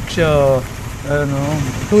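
A news narrator speaking in Kannada, with two drawn-out spoken phrases.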